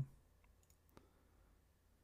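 A few faint computer mouse clicks in the first second, over near silence, as a program is launched from a desktop menu.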